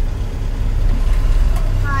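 Car engine idling while stopped, a steady low rumble heard from inside the cabin. A voice says a short "hi" near the end.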